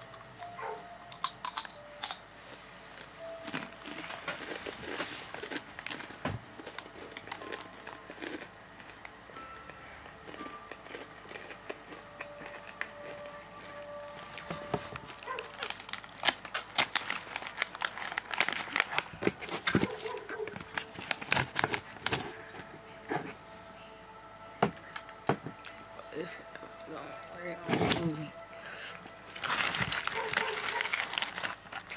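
Red Hot Takis rolled tortilla chips being chewed, with many sharp crunches, and a small chip bag crinkling. The crunches come thickest in the second half.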